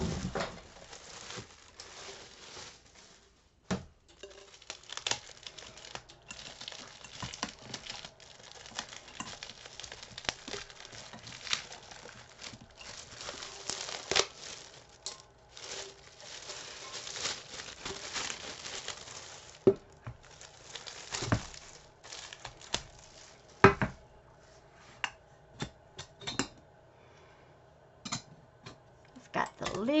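Clear plastic bag crinkling and rustling as it is worked off a stovetop tea kettle, busiest through the first two-thirds. There are a few sharp knocks about two-thirds of the way in, then only light, scattered handling sounds.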